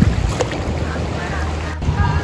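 Pool water splashing and sloshing around a swimmer as he comes up out of a freestyle stroke and stands, over a steady low rumble.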